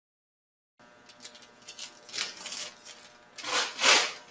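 A sheet of wax paper rustling and crinkling as it is handled and lifted, in several swishing bursts that start about a second in, the loudest just before the end.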